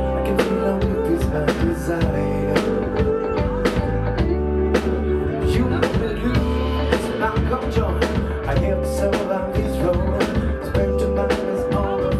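Live band playing a song: a drum kit keeps a steady beat under guitar and keyboard, with a man singing at the microphone.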